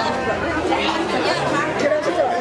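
Several people talking at once: overlapping chatter of a small crowd of men standing together, with no single clear voice.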